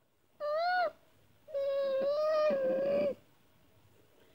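A child's high-pitched vocal imitation of a monster's cry: a short call that rises and falls, then a longer one held on one pitch.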